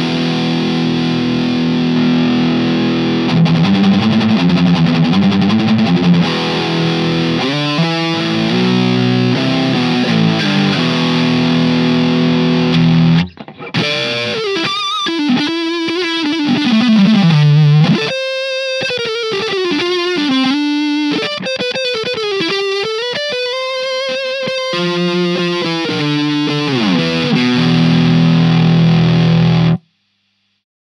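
Electric guitar, a Godin LGX-SA with Seymour Duncan pickups, played through a Marshall DSL100H valve amp head on its Ultra Gain channel, heavily distorted. About thirteen seconds of sustained chords and riffs give way, after a short break, to single-note lead lines with bent and wavering notes. It ends on a held chord that cuts off sharply.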